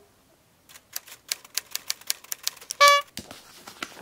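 Typewriter keys clacking in a quick run of about five or six strokes a second, then a single bell ding about three seconds in, followed by a few more key strikes. A typing sound effect for typed-on captions.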